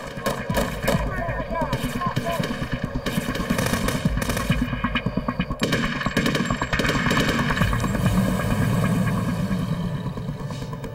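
Sustained rapid gunfire: dozens of shots fired in quick succession.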